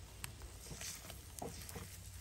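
Faint light clicks of metal tongs against the metal egglets on a barbecue grill, over a soft steady hiss.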